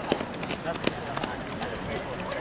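Runners' footsteps on a synthetic track as they slow after finishing a sprint: a few sharp steps spaced less than half a second apart, over faint distant voices.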